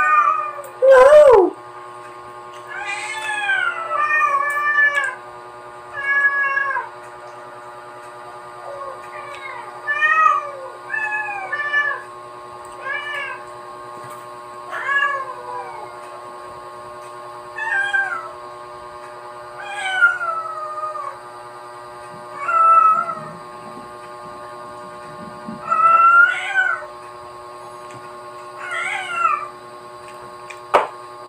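Repeated animal calls, about fourteen, each under a second and mostly falling in pitch, one every one to three seconds, over a steady hum.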